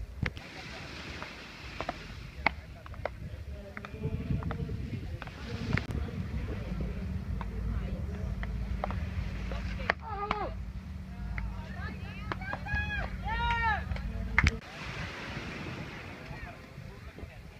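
Beach tennis rally: a series of sharp pops as solid paddles strike the ball, roughly a second apart, over a low rumble that cuts off suddenly near the end. A few short calls from voices come in the last few seconds.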